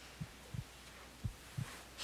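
Heartbeat sound effect, a soft lub-dub double thump about once a second, over a faint steady hum.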